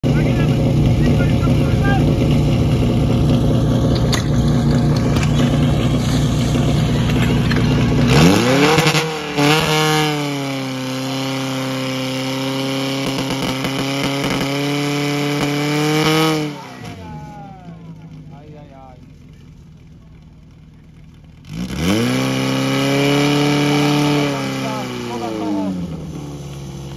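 Portable fire pump's engine running hard at high revs, then its pitch shifts about eight seconds in and it holds steady under load while pumping. It falls away to a low idle after about sixteen seconds, then revs up again about five seconds later and eases off near the end.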